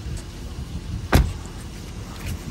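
Rear door of a Mercedes-Maybach S-Class sedan pushed shut by hand, closing with a single solid thud a little over a second in, over a low outdoor rumble.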